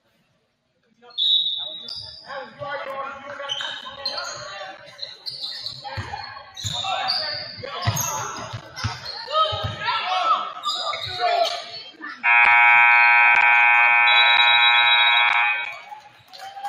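Gymnasium scoreboard horn sounding one loud steady blast of about three and a half seconds, signalling the game clock running out at the end of the period. Before it, sneakers squeak on the hardwood floor and a basketball bounces amid crowd voices.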